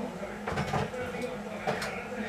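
Rummaging in kitchen storage for a container: a few knocks and clatters of things being moved about, the loudest about half a second in and another shortly before the end.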